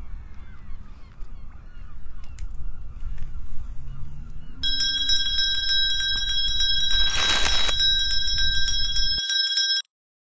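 A small bell rung rapidly over and over from about halfway through, with a short rush of noise under it, then cut off suddenly near the end. A low rumble sits underneath until then.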